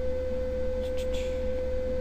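A steady electrical whine, one unbroken tone over a low hum, with two faint clicks about a second in.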